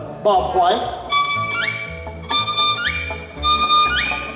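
Fiddle playing bird-call imitations over bluegrass band backing. A high held note slides sharply upward, three times in a row about a second apart, after some lower wavering slides at the start.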